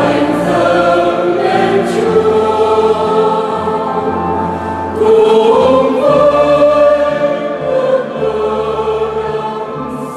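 Mixed choir singing a Vietnamese Catholic hymn, with low held bass notes beneath the voices; the singing swells louder about halfway through.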